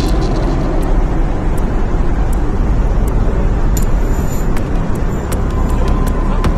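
Steady, loud rumbling noise of an airliner cabin, with a few scattered clicks and knocks.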